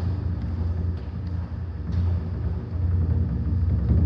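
Japanese taiko drums played softly, a low steady rumble like a quiet drum roll, with a few faint sharp ticks.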